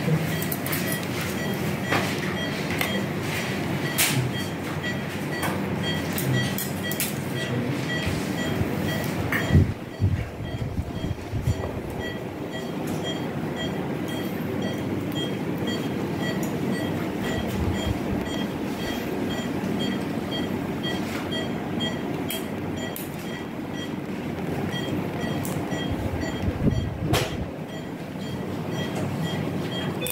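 Steady machine noise in an operating theatre, with a short high beep repeating about twice a second like a patient monitor tracking the pulse. There are scattered clicks and a louder knock about ten seconds in.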